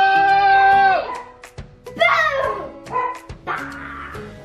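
Background music, with a child's drawn-out shout held for about a second at the start, then two short falling cries.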